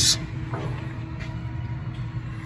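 Low, steady background hum of a shop interior, with faint steady tones and no distinct events.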